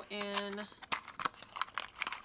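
Playing cards and their paperboard tuck box being handled, the cards slid into the box: a quick string of light clicks and taps of card and cardboard.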